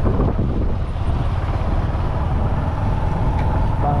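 Steady low rumble of a moving vehicle, engine and road noise mixed with wind on the microphone, heard while riding along a street. A faint steady whine joins about halfway through.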